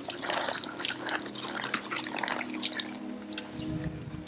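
Film soundtrack: held, steady musical tones under a rapid, irregular patter of watery clicks and drips, which is densest in the first three seconds and then thins out.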